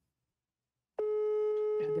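A smartphone on speaker, held to a microphone, sounds the ringing tone of an outgoing call: one steady mid-pitched beep lasting about a second, starting halfway through. A voice comes in over its end.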